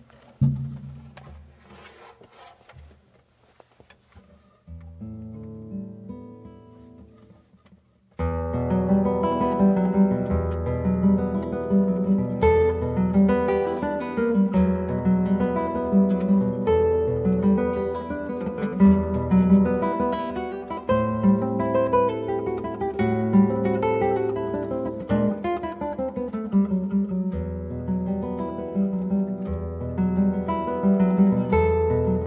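Solo nylon-string classical guitar, fingerpicked: a few soft notes at first, then from about eight seconds in a much louder, flowing passage with bass notes under a melody.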